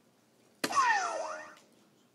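A dart strikes an electronic soft-tip dart machine with a sharp click about half a second in, and the machine plays its bull-hit sound effect: electronic tones that slide downward and fade away within about a second. The 50-point drop in score shows a bull was hit.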